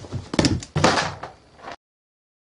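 A quick run of loud knocks and rubbing right at the microphone, with the biggest bangs around the middle, then the sound cuts off abruptly.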